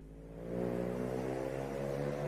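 Cars driving past in city traffic, one engine note growing louder and rising a little about half a second in as the car accelerates by.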